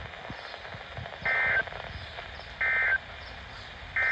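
Three short, identical warbling data bursts about a second apart from a Midland weather radio's speaker: the NOAA Weather Radio SAME end-of-message code that closes the tornado warning broadcast.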